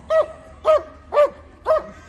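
Police German Shepherd barking four times, about two barks a second, held on the leash and worked up by a decoy in a bite sleeve.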